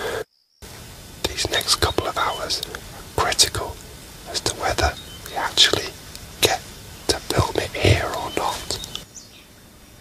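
Hushed, whispered speech: short breathy phrases with pauses between them, with a brief cut to silence just after the start.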